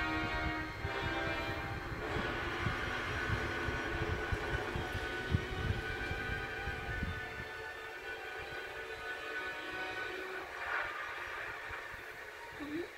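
Animated film trailer soundtrack playing through a TV speaker: a held horn-like chord, then a low rumble with a series of heavy thuds as a flying pirate ship sweeps in over the rooftops.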